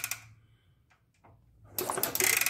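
1969 Honda CT90 engine turned over on the kick-starter with its spark plug out and grounded on the cylinder fins for a spark test: rapid mechanical clicking dies away just after the start, then near silence with a few faint ticks, then another burst of rapid clicking near the end.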